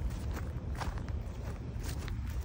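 Footsteps on dry grass, about four steps, over a steady low rumble on the microphone.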